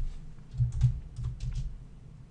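Typing on a computer keyboard: a quick, uneven run of key clicks, about eight keystrokes.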